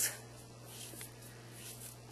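Faint rubbing of a cotton jersey T-shirt strip as it is pulled and stretched through the hand, which makes the strip curl in on itself into a cord, with a soft tick about a second in.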